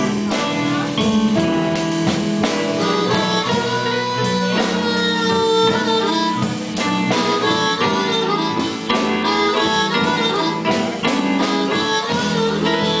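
Live blues band playing an instrumental passage: harmonica and electric guitar over bass and drums.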